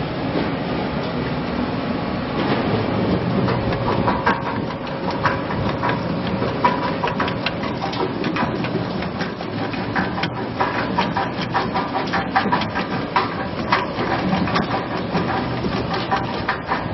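LXTP 3000 potato washing, peeling and cutting machinery running, a steady motor hum with irregular clattering knocks as potatoes pass through the cutter. The knocks grow denser from about four seconds in.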